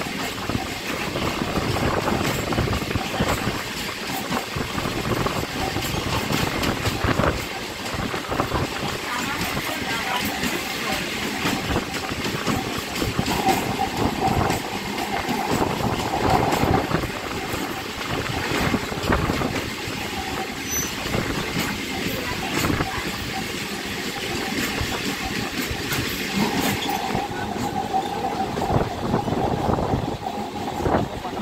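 Railway noise of an express train's coaches rushing past close alongside a moving suburban train: a steady rush of wind and wheels with a rattle of clicks over rail joints and a wavering whine. The high rushing thins near the end as the last coaches go by.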